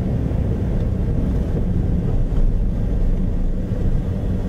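Engine and road noise of a vehicle driving on a dirt road, heard from inside the cabin: a steady low rumble.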